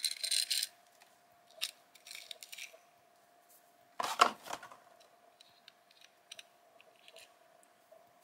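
Hands pulling old rubber bands off a die-cast Matchbox toy car and handling its plastic packaging: a brief rustle at the start, scattered light clicks, and a sharp clatter about four seconds in as something is set down on the table, over a faint steady hum.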